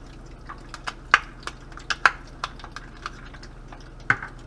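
Hot cooking oil in a frying pan crackling and popping as butter melts into it: irregular sharp pops over a low steady hiss, a couple of louder pops about one and two seconds in.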